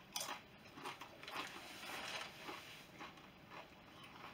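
Faint crunching of a ghost pepper tortilla chip being chewed, a few separate crunches.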